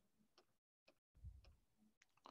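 Faint, separate ticks of a stylus tapping on a drawing tablet, about three in two seconds, over a faint low rumble a little past the first second.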